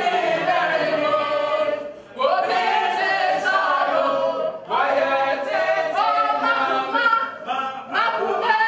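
A group of voices singing together without instruments, in sung phrases broken by short pauses about two and five seconds in.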